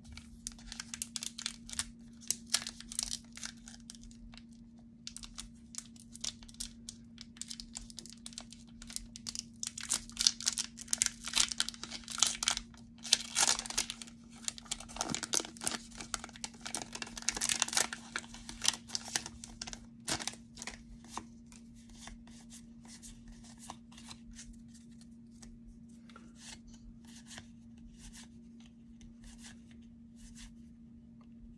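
A foil Pokémon booster pack being torn open and crinkled by hand, in crackly bursts that are loudest in the middle. Near the end it gives way to faint flicks and rustles of cards being handled, over a faint steady low hum.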